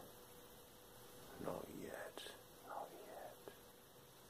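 A man's faint whispered speech in short phrases, over a low steady electrical hum.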